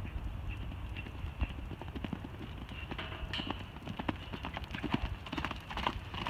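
Hoofbeats of two horses running loose, an uneven patter of many dull thuds.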